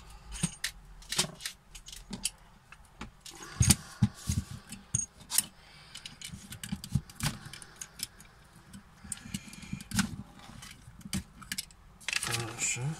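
Irregular clicks, clacks and small knocks of handling as a plastic-and-metal PCB holder is set on the table and a circuit board is fitted into its clamps; the loudest knock is about three and a half seconds in.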